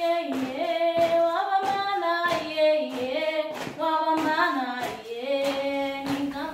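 A group of girls singing a song together, with hand claps on the beat, about three claps every two seconds.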